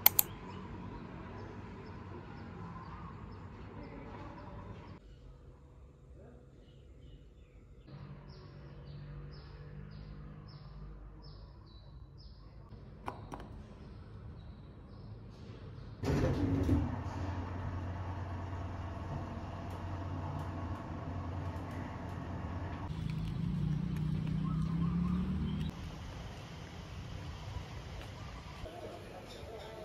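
Quiet everyday ambience in several short takes: birds chirping in short repeated calls, then a steadier low hum and rumble that swells a little before cutting off.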